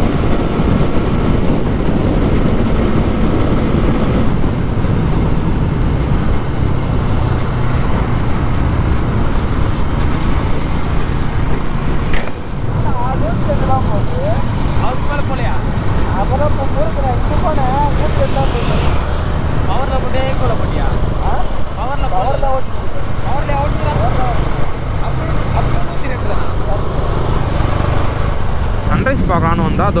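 Wind rushing over the camera microphone and the motorcycle's engine and tyres running at highway speed, a steady loud rumble with a brief dip about twelve seconds in. A voice is faintly heard through the wind in the second half.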